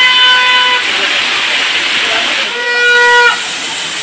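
Waterfall water pouring and splashing close by in a steady loud rush. Over it, a steady horn-like toot is held for about a second twice: at the start and again near the end.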